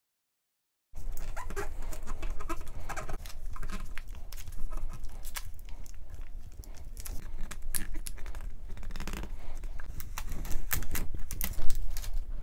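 Transfer tape and self-adhesive vinyl being handled, pressed and peeled: crackling and crinkling with sharp clicks, a few short squeaks about two to three seconds in, over a low rumble of handling noise on the microphone.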